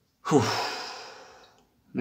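A person's sigh: a breathy exhale with a falling voice at its start, fading out over about a second and a half.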